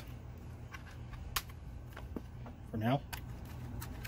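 A few sharp clicks and light knocks of a hard plastic cover handled by hand, over a steady low hum.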